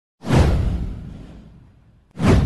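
A whoosh sound effect with a deep rumble under it. It hits suddenly about a quarter second in and fades away over about a second and a half.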